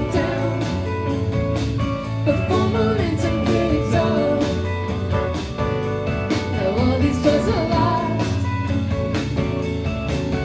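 Live rock band playing a song: electric guitars and keyboards over a steady drum beat.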